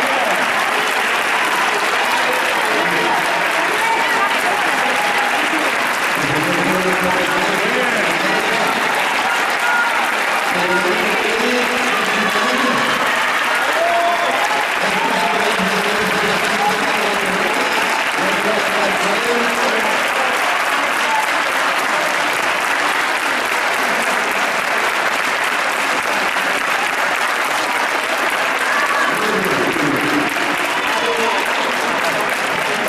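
Steady, sustained applause from an audience, with voices talking over it.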